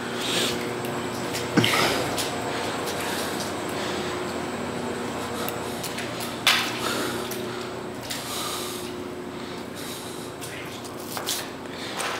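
A steady mechanical hum with an even wash of noise, broken by a couple of sharp knocks.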